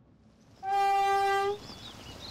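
A train horn sounds one long, steady blast of just under a second, starting a little over half a second in.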